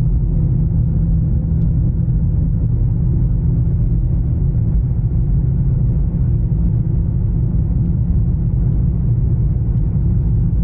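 Steady low rumble of road and engine noise heard inside the cabin of a moving car.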